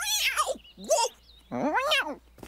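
An animated cat character yowling in fright: three shrill, wavering yowls, the last one near the end.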